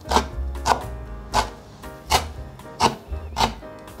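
Cleaver chopping pickled mustard greens on a wooden cutting board: about six even strokes, one every 0.7 s or so.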